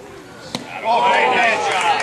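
A baseball bat hitting a pitched ball once, sharply, about half a second in. Spectators then break into loud shouting and cheering.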